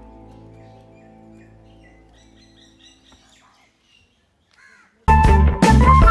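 Steady background music fades out over the first three seconds, with faint chirps over it. About five seconds in, a loud burst of end-screen sound effect starts, dense and bass-heavy, lasting a little under two seconds.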